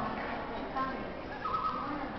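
Arcade din: voices mixed with electronic sound effects from the game machines, with a short steady tone near the end.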